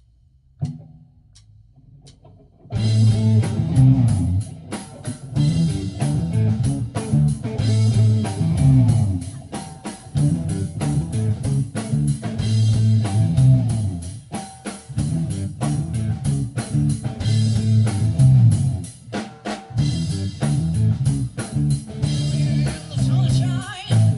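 A live band of electric guitar, bass guitar and drum kit kicks in about three seconds in, after a few faint taps, and plays a steady repeating groove without vocals.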